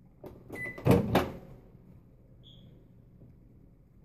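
A short clatter of several knocks and clicks in the first second and a half, the loudest two close together about a second in, then quiet room tone.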